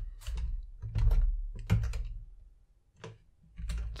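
Keystrokes on a computer keyboard, a quick run of clicks with a low thud under each, then a pause of about a second before a few more keys near the end.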